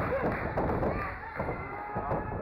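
A thud on the wrestling ring as two wrestlers collide and lock up, followed by another thump about one and a half seconds in.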